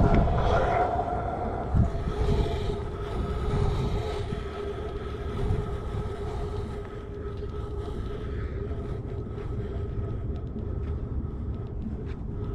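Pro scooter wheels rolling across a hard tennis-court surface: a steady rumble with a faint humming tone from the wheels, with a single knock about two seconds in.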